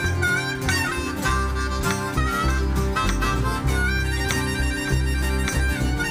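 Instrumental music from a small band: acoustic guitar and plucked upright bass under a held, slightly wavering melody line.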